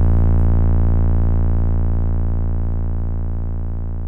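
Music: a single low synthesizer note held on at the end of a hip-hop beat, slowly fading away with no drums or vocals.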